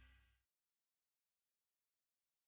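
Near silence: the last faint trace of a faded-out rock song dies away within the first half second, then complete digital silence.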